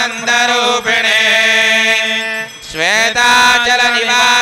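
A voice chanting Sanskrit mangalam verses in a slow sung melody, holding a long note, then sliding up in pitch about three seconds in and holding again.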